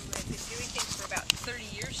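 Quiet voices talking in the background, with a single sharp click about a second and a quarter in.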